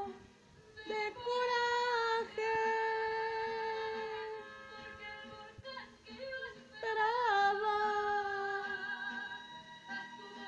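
A woman singing with a recorded song behind her, holding two long notes: the first about a second in, the second about seven seconds in, opening with a wavering turn.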